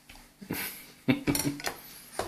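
A baby's hands banging on a plate with a fork resting on it: a knock about half a second in, then a quick run of clattering clinks of the fork and plate.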